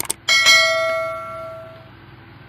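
Subscribe-button animation sound effect: two quick mouse clicks, then a notification-bell ding that rings out and fades over about a second and a half.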